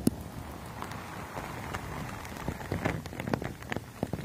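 Close-miked ASMR trigger sounds: a dense run of small wet clicks and crackles, sparse at first and thickening toward the end.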